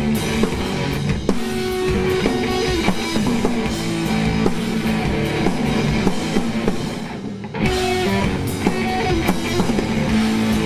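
A grunge-punk rock trio playing live, with distorted electric guitar, bass guitar and drum kit, in an instrumental passage without vocals. The sound thins out briefly about seven seconds in, then the full band comes back in.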